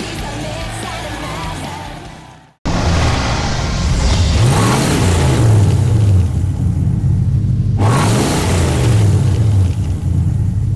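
Car engine running hard under music and crowd yells, fading out about two and a half seconds in. After a brief silence, a car engine revs up and down in several sweeps over background music.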